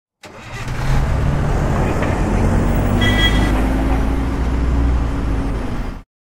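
A loud motor-vehicle engine running steadily, with a short higher-pitched tone about three seconds in. It starts suddenly just after the beginning and cuts off abruptly at the end.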